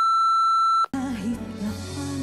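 A single steady electronic beep, a pure high tone lasting about a second, that cuts off sharply; music follows it.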